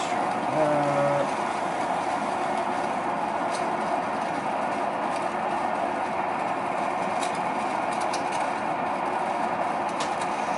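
Electric pottery wheel running at a steady speed, an even motor hum and whir, with a few faint ticks from hands working wet clay on the spinning head.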